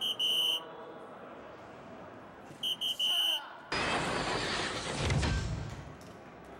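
Electronic soft-tip dart machine sounding: two quick runs of high beeps about two and a half seconds apart, then a loud, noisy award effect of about two seconds, starting about four seconds in, that marks a 'White Horse', three different triples in one Cricket round.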